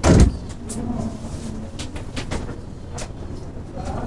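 A single loud, deep thump right at the start, then quieter room noise with a few faint clicks.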